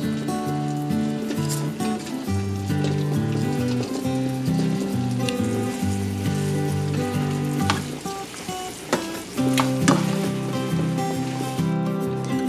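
Chicken wings sizzling in a sticky honey-garlic sauce in a frying pan as they are tossed with a wooden spatula, with a few sharp knocks of the spatula against the pan. Background music with a melodic bass line plays throughout.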